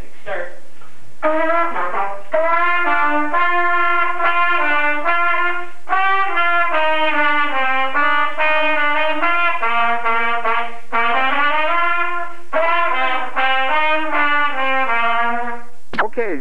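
Two trumpets playing a tune together in phrases of held notes, with short breaks between phrases.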